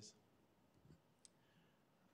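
Near silence: quiet room tone with one faint, short click about a second in.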